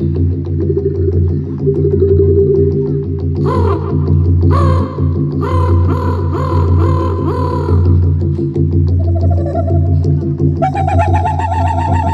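A woman performing northern throat singing over a steady low drone. Partway through she gives a quick series of short, arching calls, about two a second, then moves into a held, slightly wavering higher note near the end.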